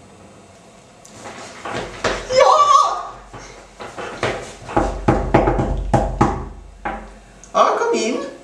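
A person laughing in repeated short bursts, starting about a second in and running until near the end.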